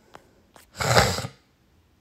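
A single human sneeze about a second in, short and loud.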